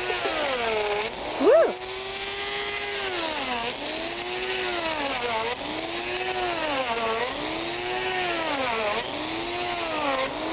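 Die grinder cutting grooves into a block of ice: a steady motor whine that sags in pitch each time the bit bites in and climbs back as it lifts off, about every second and a half. About a second and a half in comes a brief, louder, rising squeal.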